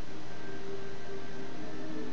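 Video game trailer soundtrack playing: a few held low tones, like a dark drone, over a steady hiss.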